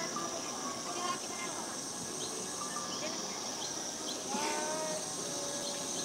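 Outdoor ambience carried by a steady, high-pitched insect drone, with scattered short chirps and a brief gliding call about four and a half seconds in.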